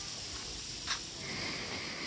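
A person sniffing a flower close to the microphone, one short sniff about a second in, over a steady hiss of garden sprinklers spraying. A faint high steady tone comes in past halfway.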